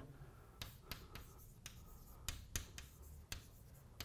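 Chalk writing on a blackboard: a string of faint, short taps and scratches, irregularly spaced, as a short note is chalked up.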